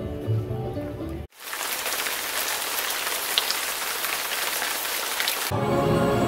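Background music cuts off abruptly about a second in, and steady rain pours down for about four seconds. New music with a beat starts near the end.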